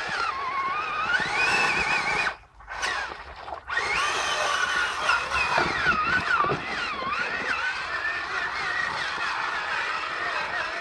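Electric motor and drivetrain of a Traxxas Summit RC truck whining as it drives out of water and up a sandy bank, the pitch rising and falling with the throttle. The whine cuts out for about a second and a half about two seconds in, then picks up again.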